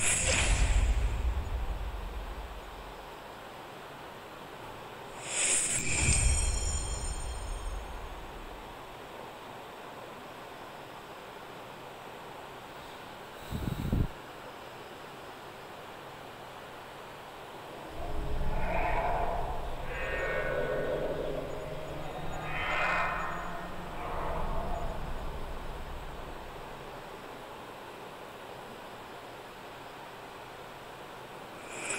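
Sound effects of the Thanos Snap Google Easter egg played on a phone as search results dissolve and are restored. There is a swell of rumble and hiss at the start and another about six seconds in, each fading over a couple of seconds, then a sharp click about halfway. A longer stretch of layered, pitched effects follows in the last third.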